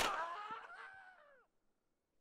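A man's drawn-out cry of pain right after a gunshot, falling in pitch and dying away about a second and a half in.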